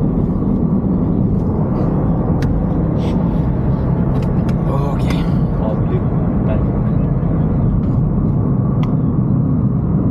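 Road and engine noise inside a moving car's cabin: a steady low rumble, with a few small clicks and rattles.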